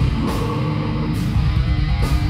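Live metal band playing loudly: electric guitars and bass over a drum kit, dense and unbroken.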